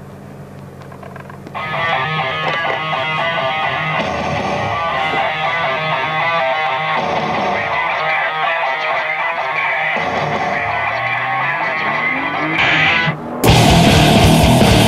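A low steady hum, the Nissan GT-R R35's engine idling, then about a second and a half in, rock music with guitar starts and carries on; near the end it turns louder and heavier.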